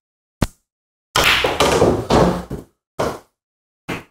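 Pool shot: a sharp click of the cue tip on the cue ball, then about a second later a longer rumbling rattle as the pocketed 8-ball drops and rolls away inside the table, followed by two short knocks of balls striking.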